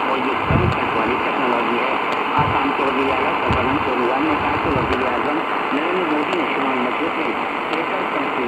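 Tecsun PL-450 portable radio receiving a weak medium-wave AM broadcast on 747 kHz: a voice speaking, plausibly in Hindi, under steady static hiss. The sound is thin and muffled, with nothing above the narrow AM audio band.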